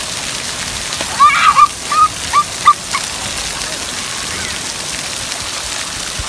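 Splash-pad water pouring off a play chute and spout and splattering onto wet pavement, a steady rush. About a second in, a few short high-pitched calls sound over it.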